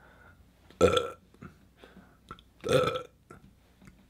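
A man burping twice, about two seconds apart, each burp short and loud.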